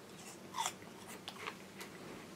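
A mouthful of crisp Zari apple being chewed: a handful of faint crunches, the clearest about half a second in.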